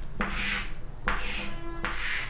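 Chalk writing on a chalkboard: two scraping strokes as lines are drawn, the second with a faint brief squeak.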